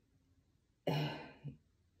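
A woman clearing her throat once, about a second in, with a short second catch just after.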